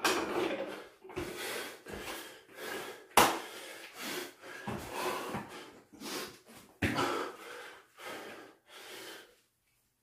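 A man breathing hard in short, heavy breaths, winded late in a long bodyweight workout of pull-ups, burpees and squats. Two sharp thuds cut in, the louder about three seconds in and another near seven seconds, as he drops from the pull-up bar and goes down to the floor mat.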